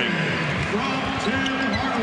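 A basketball being dribbled on a hardwood court, with voices going on over it.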